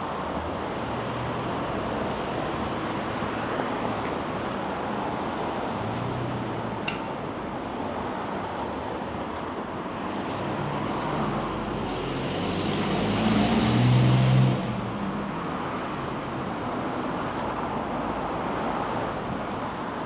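City street traffic: cars passing steadily on a busy road. A louder vehicle, with a low hum and a high hiss, builds up about two-thirds of the way through and stops suddenly.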